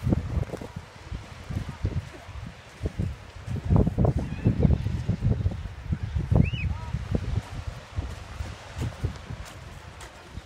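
Wind buffeting a phone's microphone in uneven low rumbles, heaviest through the middle, with faint distant voices under it.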